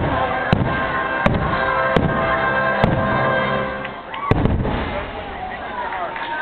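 Aerial fireworks shells bursting: five sharp booms, the first four about a second apart and the last after a longer pause, over the show's music playing throughout.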